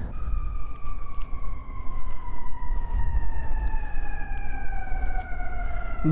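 A long siren-like tone, with a higher tone above it, gliding slowly and evenly down in pitch throughout, over a low rumble.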